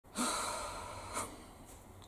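A woman's breathy exhale, fading over about a second, followed by a short second breath.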